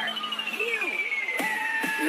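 Budots electronic dance remix in a break with no beat: a long synth tone glides steadily downward, and a short pitched vocal sample comes in near the end.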